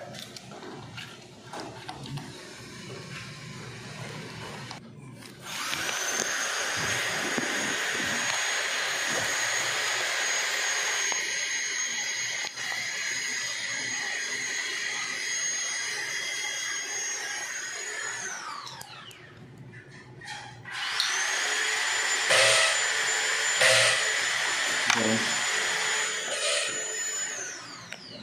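An electric power tool's motor runs twice: once for about thirteen seconds from about five seconds in, and again for about six seconds near the end. Each run starts with a quickly rising high whine, holds steady, and winds down with a falling whine. A few sharp knocks sound during the second run.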